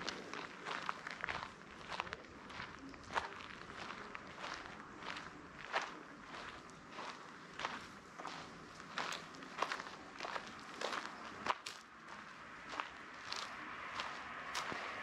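A walker's footsteps at a steady pace, one crisp step a little more often than every half second.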